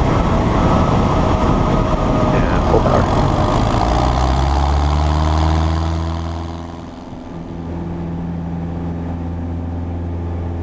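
Rushing wind and runway rumble at the main wheel of a Piper Warrior rolling out after landing. About seven seconds in, this gives way to the steady low hum of its four-cylinder Lycoming engine at idle, heard inside the cockpit.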